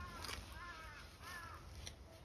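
A crow cawing three times in a row, about two-thirds of a second apart, each caw a short call that rises and falls in pitch.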